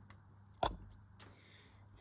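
Near silence: quiet room tone broken by one sharp click a little over half a second in and a fainter tick about half a second later.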